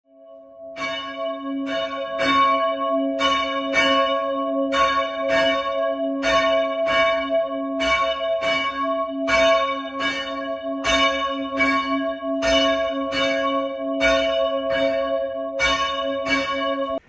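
A church bell struck over and over, about two strokes a second, starting about a second in. Its ring keeps sounding between the strokes.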